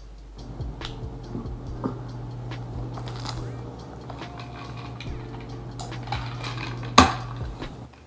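Plastic noodle packet crinkling and rustling as it is handled, with scattered small clicks and one sharp knock about seven seconds in, over a steady low hum.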